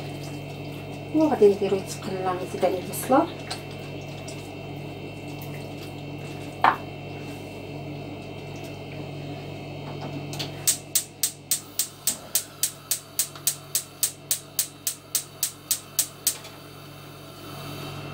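Gas hob spark igniter clicking in quick, even ticks, about four a second, while a burner knob is held turned. The ticking runs for about six seconds from a little past the middle and then stops suddenly.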